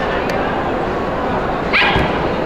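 A dog gives one short, high yip near the end, over the steady murmur of a crowded show hall.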